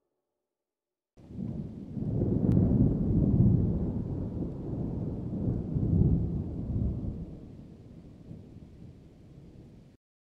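Wind buffeting an outdoor microphone: a low, gusty rumble with no steady tone. It starts abruptly about a second in, swells and falls, then fades away.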